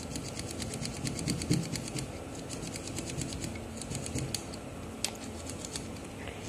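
Slide potentiometers on a graphic equalizer's fader board being slid back and forth by hand to work in freshly sprayed contact cleaner. The faders make quick runs of small clicks and scrapes, dense over the first two seconds and again around four seconds in, with one sharper click near the end.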